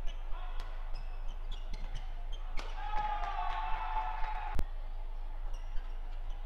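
Badminton rally: sharp, irregular cracks of rackets striking the shuttlecock, the loudest about four and a half seconds in. A drawn-out squeal with a slightly falling pitch runs through the middle of the rally.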